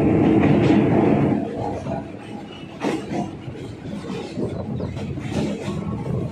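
Suburban electric local train in motion, heard from the open carriage doorway: a loud rumble and rattle of wheels on track, loudest for the first second and a half, with sharp clacks now and then.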